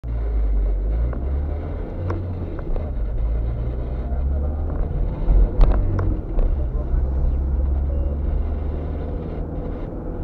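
A car driving, heard from inside the cabin: a steady low rumble of engine and tyres on the road, with a few short sharp clicks or knocks, the loudest a little past halfway.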